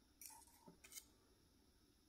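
Faint scraping of a knife cutting down through a soft Valençay goat's-cheese pyramid held with a fork: three or four soft strokes in the first second, then near silence.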